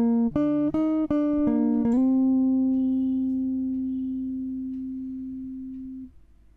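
Electric guitar playing a phrase of single plucked notes, about one every third of a second, then a note that slides up slightly into place about two seconds in and is left to ring for about four seconds, slowly fading before it is cut off at the end.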